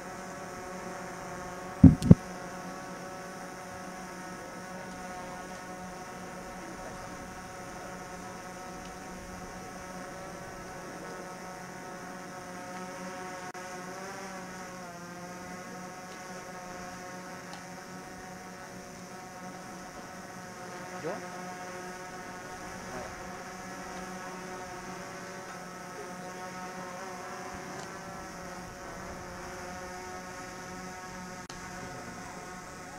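A steady hum with several even overtones, wavering briefly in pitch about halfway through. Two sharp knocks come close together about two seconds in.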